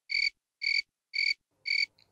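Cricket-chirp sound effect, the stock 'crickets' gag for a silence with no response: four short, evenly spaced chirps, about two a second.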